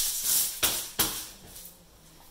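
Aluminium foil crinkling as it is pressed and smoothed flat by hand inside a cardboard box, with a couple of sharp crackles in the first second, then dying away.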